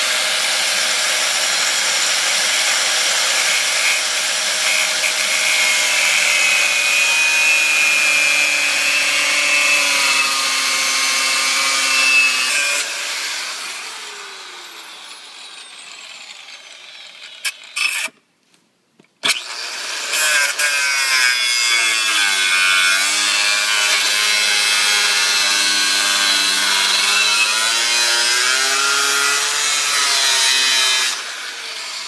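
Electric angle grinder with an unguarded cut-off wheel cutting into the steel hub of a lawn-tractor wheel: a loud, steady grinding whine. About twelve seconds in it winds down and fades out, then it starts again and keeps cutting to the end.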